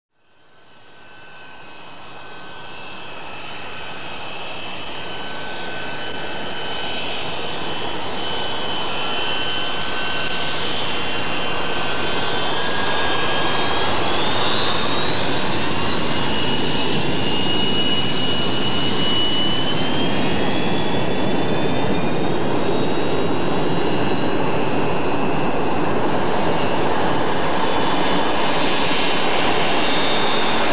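Jet engines of an early Boeing 737 (737-200) on the runway. The noise fades in from silence and grows steadily louder, with a high whine that rises in pitch about halfway through and then holds.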